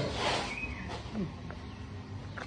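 A metal spoon scraping the soft flesh out of a green coconut shell, with one scratchy scrape at the start, followed by a few short murmured vocal sounds.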